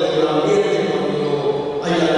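A man's voice through a public-address system in a large, echoing hall, its vowels drawn out and smeared together so that the words blur.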